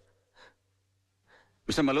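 Near silence with two faint, short breaths, then a man starts speaking near the end.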